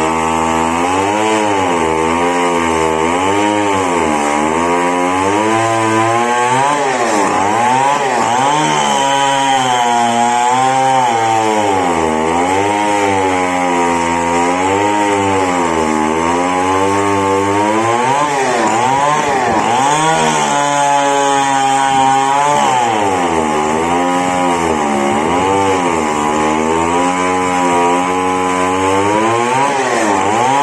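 Two-stroke chainsaw ripping lengthwise through a large merbau log, running loud and steady. Its engine pitch rises and falls about every two seconds as the chain bites into the hardwood and eases off.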